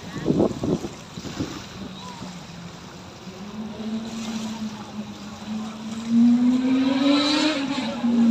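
An engine running steadily. It slowly rises in pitch and grows loud from about six seconds in, as if coming closer. A few low knocks come about half a second in.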